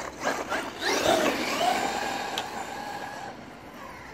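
Traxxas X-Maxx RC monster truck's brushless electric motor whining as it accelerates hard away on 6S LiPo power: the pitch rises about a second in, then holds steady and fades as the truck gets farther off. A few sharp clicks come just before the whine.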